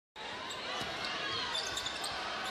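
A basketball being dribbled on a hardwood court over the steady background noise of an arena crowd.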